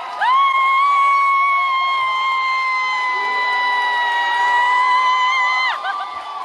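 A long, high-pitched scream held on one pitch close to the microphone, over a cheering crowd; it drops off near the end. A second, lower voice joins the shouting about halfway through.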